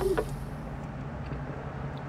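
Steady low hum of a car idling, heard inside the cabin, after the last note of the intro music cuts off about a quarter second in.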